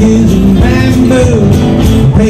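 Song played on acoustic guitar and keyboard, with a voice singing.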